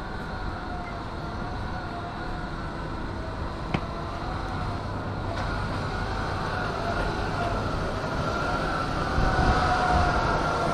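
Steady mechanical hum with a faint wavering whine, louder near the end, and one sharp click about four seconds in.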